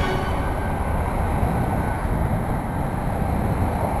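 Steady low rumble of road traffic passing on the bridge.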